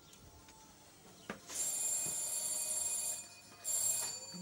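Shop door bell ringing: a click, then a bright electric ring lasting about a second and a half, and a second short ring near the end.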